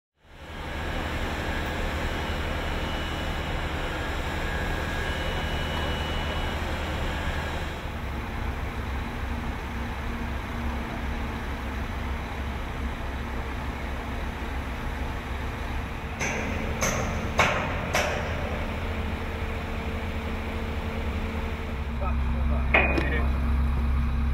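Steady low hum of construction machinery running, shifting in character twice. There are three sharp metallic knocks about two-thirds of the way through and another near the end.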